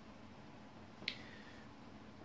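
A single small, sharp click about a second in, with a faint brief ring after it, over quiet room tone.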